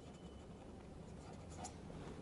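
Faint scratching of a pen writing a word on paper.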